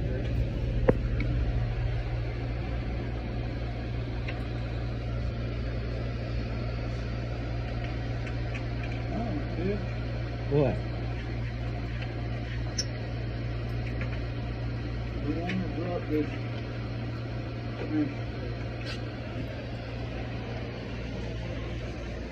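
Steady low road and engine noise inside a moving car's cabin, with a few faint brief snatches of voice about halfway through and again near the end.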